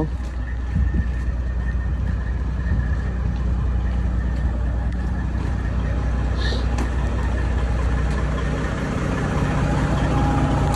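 Heavy diesel semi-truck engine idling steadily, an even low rumble with no change in speed.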